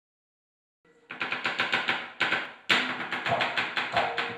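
A dalang's rapid rattling strikes with the cempala on the wooden puppet chest and its keprak metal plates, a fast volley starting about a second in with two brief breaks. This keprakan is the signal that opens a wayang kulit performance and cues the gamelan.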